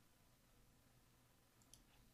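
Near silence: room tone, with one faint computer-mouse click near the end.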